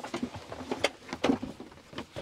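Rummaging through loose gear stored behind a tractor cab seat: irregular rustling and handling noise with a few sharp knocks, the loudest just under a second in and another about a second and a quarter in.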